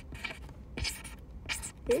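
Rapid light scratching and rustling from hands working at a desk, a quick run of small strokes with a couple of louder hissy rustles around the middle. A low steady hum runs underneath.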